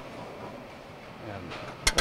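A 1656 Johannes Muijs weight-driven wall clock being wound by hand, its weights pulled up on their cords: mostly quiet, then a quick run of sharp ratchet clicks starts near the end as the cord is pulled.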